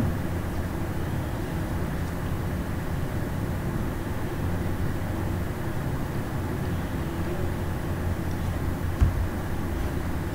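Steady background hum and hiss with no speech, and a brief low thump about nine seconds in.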